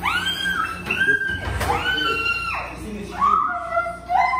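A woman's high-pitched squeals of fright, four drawn-out cries in a row.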